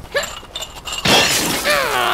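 A sudden noisy crash, like something shattering, about a second in. A cartoon character's voice cries out with swooping pitch near the end.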